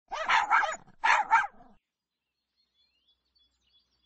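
A dog barking, two quick double barks in the first second and a half, then nothing.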